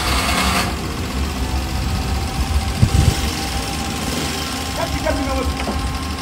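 Engine of a small minibus taxi idling, a steady low rumble.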